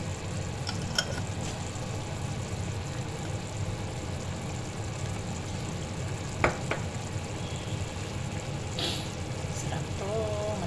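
Chicken livers in soy-sauce adobo sauce simmering in a frying pan with a steady bubbling sizzle. A few sharp clicks come about a second in and twice about six and a half seconds in.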